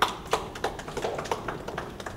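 Hand claps from a small group applauding, a few sharp claps about three a second, thinning out.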